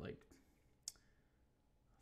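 Near silence with a single short, sharp click about a second in.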